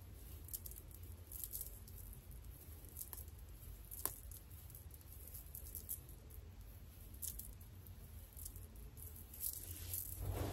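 Faint scattered rustling and crackling of coily natural hair being handled and parted with fingers and a comb, with one sharper click about four seconds in, over a low steady hum.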